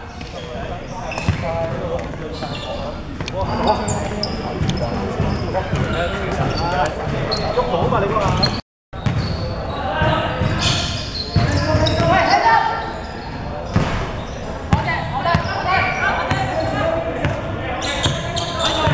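A basketball bouncing on a hardwood gym floor amid players' shouts and chatter, echoing in a large hall. The sound cuts out completely for a moment about nine seconds in.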